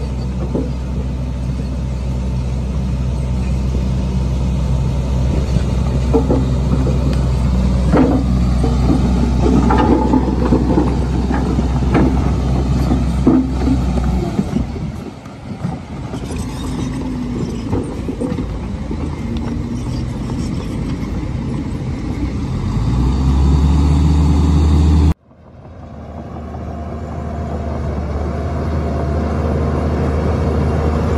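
Diesel dump truck engines running steadily while a tipped bed unloads soil and rock, with scattered knocks of rocks tumbling out. Near the end an engine revs up, rising in pitch. The sound then cuts off abruptly and a crawler bulldozer's diesel engine takes over, pushing fill.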